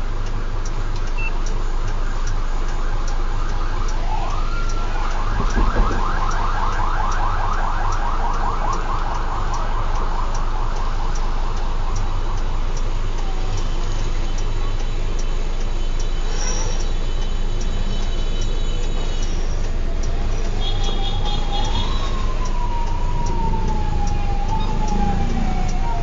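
Fire truck siren heard from inside the cab over the idling diesel engine. It plays a rapid yelp through the first half, then a slow wail that rises and falls near the end. There is a short thump about six seconds in.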